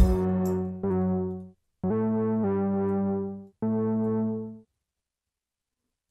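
Synthesizer melody played from an FL Studio piano roll on a Reaktor instrument: a held note, then four separate sustained notes stepping upward in pitch, each cutting off cleanly. It stops about three-quarters of the way through.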